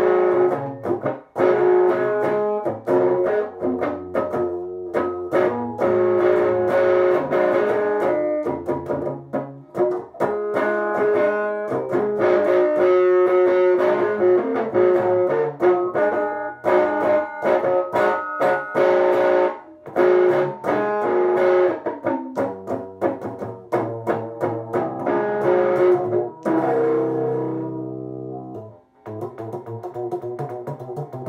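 Electric guitar playing a rhythm part: chords and picked notes struck in a steady, driving pattern, thinning out and dipping briefly near the end.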